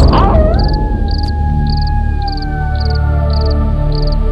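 Background film score: one long held note that slowly sinks in pitch over a steady low drone, with short high cricket chirps repeating about every two-thirds of a second.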